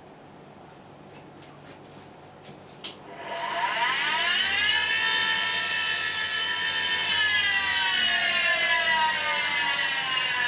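An electric grinder starts with a click about three seconds in, its whine rising as the wheel spins up. A screwdriver's badly rounded-out tip is ground on it briefly, a short hiss at full speed. The whine then falls slowly as the wheel runs down.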